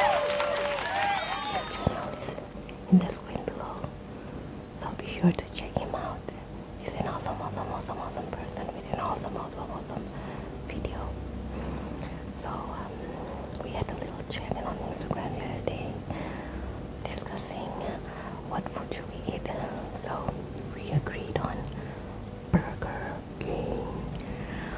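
A woman whispering softly throughout, with a few short, sharp clicks scattered through it.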